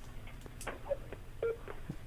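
Faint telephone-line audio as a caller is put through on the studio's phone line: low line noise with a few brief, faint blips and fragments, about halfway through and again near the end.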